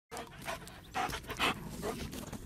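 A large dog panting hard with its mouth open, a quick run of short breaths about two a second.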